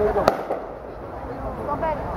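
A single sharp firework bang about a quarter of a second in, over a crowd's chatter.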